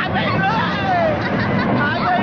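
Several people talking over one another: a steady babble of voices with no single clear speaker.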